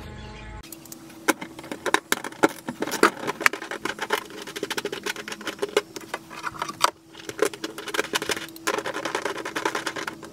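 Rapid, irregular clicking and rattling of plastic wiring-harness connectors and loom being handled, over a steady faint hum.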